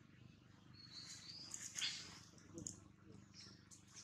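Faint animal sounds: a short, thin, high-pitched call about a second in, followed by a brief rustle and a few soft scattered noises.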